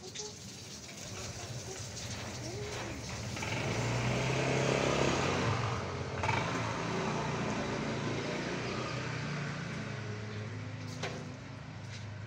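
A motor vehicle running close by, with a low engine hum that swells to its loudest about four to six seconds in and then slowly fades.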